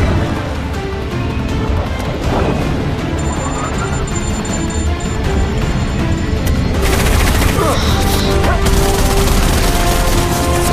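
Film sound mix of a fighter jet's rapid cannon fire, a dense burst of shots starting about seven seconds in and running on, over a steady low jet rumble and a dramatic orchestral score.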